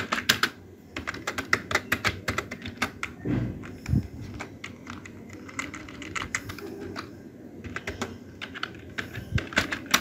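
Computer keyboard typing in quick bursts of keystrokes with short pauses between them, with one dull thump about four seconds in.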